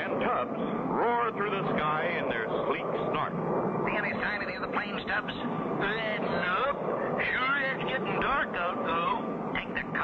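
Men talking, with a steady jet aircraft engine drone underneath.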